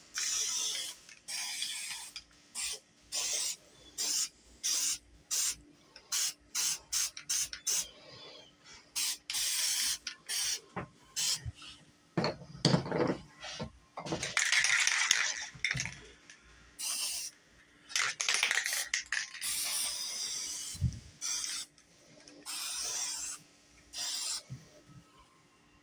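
Aerosol spray paint can spraying in a string of short hissing bursts, with several longer sprays in the second half. About twelve seconds in there is a brief, louder and lower sound.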